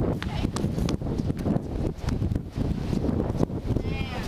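Wind rumbling on the microphone of a camera carried while walking, with irregular light clicks and knocks throughout.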